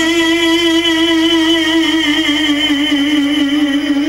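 A man singing one long held note with vibrato in a Banat ascultare (slow listening song); the note steps slightly lower about halfway through and is held to the end.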